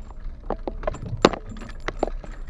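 Rattling and clinking inside a car's cabin as it rolls slowly over a rough dirt road: irregular sharp clicks, the loudest just over a second in, over a low road rumble.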